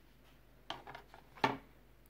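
Two brief handling sounds, a short knock and rattle under a second in and another about three-quarters of a second later, against a quiet room.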